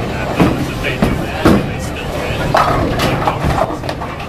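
Bowling alley din: voices chattering, background music, and several sharp knocks of balls and pins in the first two seconds.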